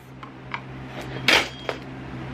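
Handling noise from a small wooden wall shelf with a wire hanger as it is lifted: a few light clicks and one louder knock with a rustle about a third of the way through.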